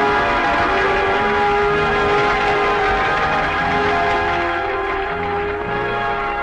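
Church bells pealing together with the film's background music: many sustained ringing tones held steady throughout.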